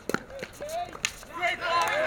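Two sharp tennis-ball hits off racquets about a second apart during a doubles rally, followed by loud overlapping shouts from the players as the point ends.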